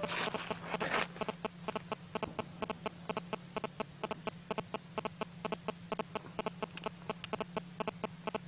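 A belt-fed automatic grenade launcher firing a long continuous string of sharp shots, about six a second, louder and noisier during the first second.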